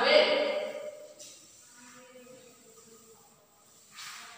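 A woman's voice trails off in about the first second, then it goes quiet apart from faint room sound and distant voices.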